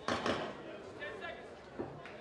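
Boxing gloves landing punches: a sharp, loud smack right at the start and a shorter one near the end, amid shouting from ringside.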